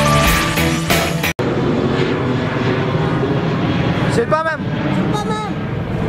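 A short logo jingle that cuts off abruptly about a second in, followed by a steady outdoor noise of a street crowd, with people's voices calling out briefly twice near the end.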